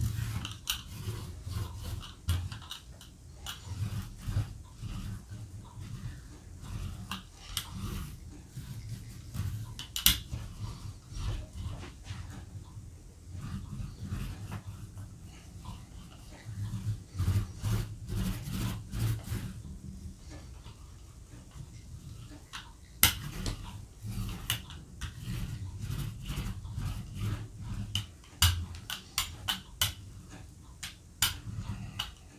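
Small hand squeegee dragging thick acrylic paint across a plastic Gelli plate in short repeated strokes: a sticky scraping and rubbing that comes and goes with each pass, with a couple of sharp clicks as the tool knocks the plate.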